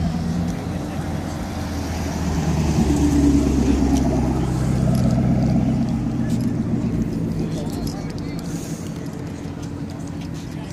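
A yellow Chevrolet Camaro's engine running at low, steady revs as the car rolls slowly past, growing louder over the first few seconds and then fading as it pulls away.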